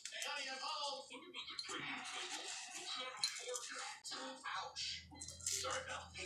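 Faint speech and music in the background, from a television playing in the room, with a low steady hum for the last second and a half.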